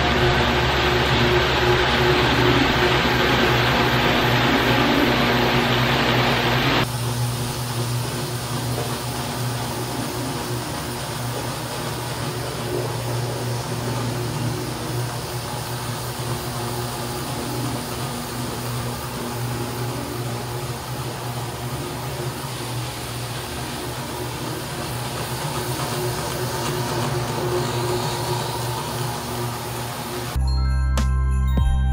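Electric rotary floor machines, one of them an HG Grinder, running steadily as their pads scrub stripper solution across vinyl composition tile to take off the old wax. The sound is a steady motor hum with a wet scrubbing hiss. About seven seconds in it drops abruptly and loses much of its hiss.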